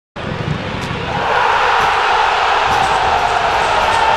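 A large crowd cheering, a dense steady roar that starts abruptly.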